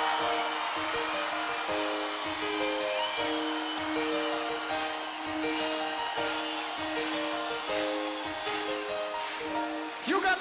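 Slow opening of a live heavy-metal song: a melody of held notes, changing about once a second, over steady crowd noise from a large concert audience.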